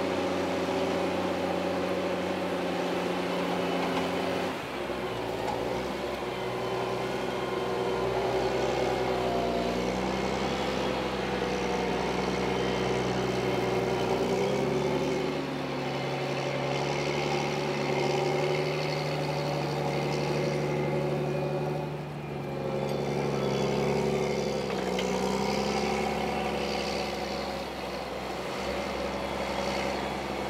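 Diesel engine of a Challenger MT765B rubber-tracked tractor running steadily under ploughing load as it pulls an eight-furrow plough through the soil. The engine note shifts in pitch several times, with short dips in loudness a few seconds in, about two-thirds through and near the end.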